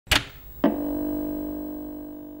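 Logo-reveal sound effect: a sharp hit, then a second hit about half a second later that rings on as a steady low chord, slowly fading.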